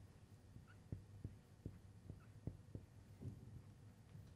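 Near silence: faint taps and brief squeaks of a marker writing on a glass lightboard, a few irregular strokes over a low steady hum.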